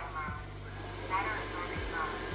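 Xiaomi TruClean W10 Ultra wet-dry vacuum running with a steady low hum while its mode is switched, with short spoken fragments over it.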